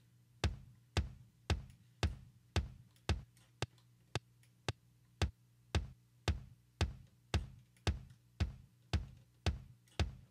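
Soloed kick drum track with a Trigger sample-replacement kick layered in, playing back as single kick hits about twice a second in a steady beat, each a sharp hit with a short decay. A few hits in the middle are shorter and quieter than the rest.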